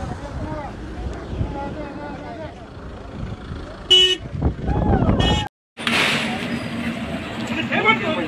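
Car horn tooting twice in short blasts about a second apart, over voices of a crowd around slow-moving cars; just after the second toot the sound drops out for a moment, then a steady low hum continues under the voices.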